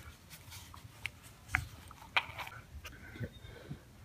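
Faint, scattered crinkles and small clicks of a wad of tissue paper being bitten and handled in the mouth.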